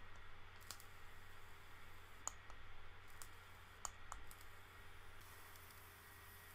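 A few faint, scattered clicks from an e-cigarette, a Lavatube mod with an iGO-L rebuildable dripping atomiser, being handled and fired for a first test burn.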